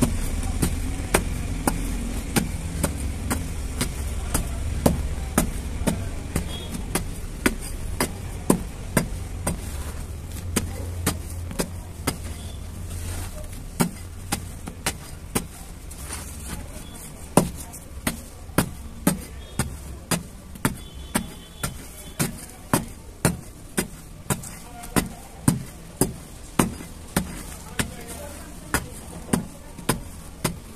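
Repeated sharp taps and crunches of a small hand tool breaking hard, dry red dirt chunks, settling into a steady rhythm of about two taps a second in the second half. Under them runs a low rumble of busy road traffic that fades about halfway through.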